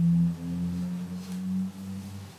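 Upright double bass playing a few low held notes that step slightly upward in pitch, the first note the loudest.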